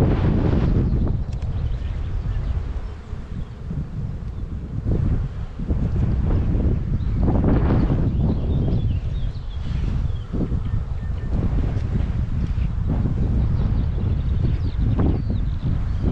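Wind buffeting the microphone in gusts, a low rumble that eases for a few seconds early on and then picks up again, over the buzz of honeybees at an open hive.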